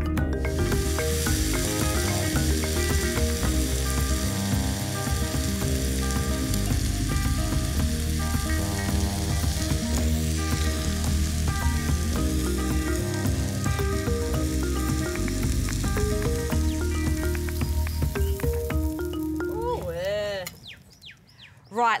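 Venison burger patty sizzling in hot fat in a frying pan, with background music playing over it. The sizzle fades out about twenty seconds in.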